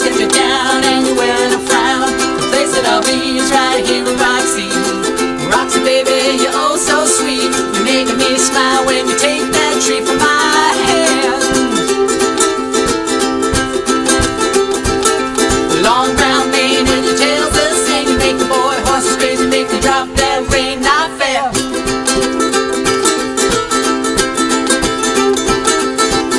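Two ukuleles strumming an upbeat chord pattern in an instrumental break between sung verses.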